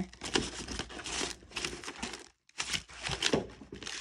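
Plastic bag and paper seed packets crinkling and rustling as hands rummage through a small basket, with a brief pause a little past the middle.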